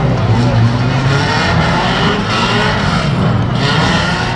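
Unlimited banger race cars' engines running as the cars drive round a shale oval, their pitch rising and falling with the throttle.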